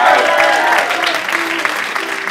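Audience applauding and cheering, with whoops and laughter. It is loudest at the start and eases slightly.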